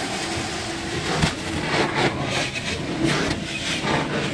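Truck-mounted carpet extraction wand (a Zipper wand) drawn across carpet: a steady rush of vacuum suction pulling air and water through the wand head, with small uneven surges as the head moves.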